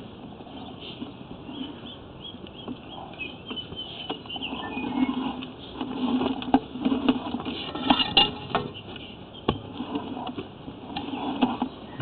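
Irregular clicks, knocks and scraping from a push-rod drain inspection camera being fed along a broken pipe. The sounds grow busier about halfway through.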